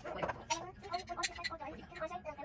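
Indistinct talking that the recogniser did not catch, with a few faint short clicks.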